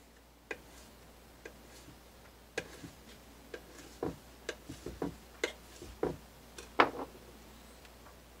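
Kitchen knife slicing oyster mushrooms on a wooden cutting board: irregular sharp taps of the blade striking the board, about fifteen of them, the loudest near the end.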